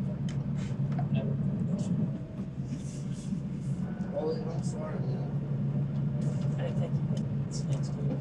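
Steady low hum of a crab boat's engine, heard inside the cabin under quiet, muffled speech.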